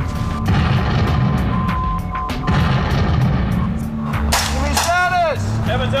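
Battlefield gunfire from a training exercise, with rifle shots cracking at irregular intervals and heavy low booms under a music bed. A loud drawn-out shout rises and falls about four to five seconds in.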